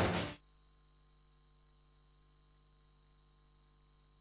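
The programme's theme music ends abruptly about half a second in, leaving near silence with only a faint steady electronic hum and thin high whine.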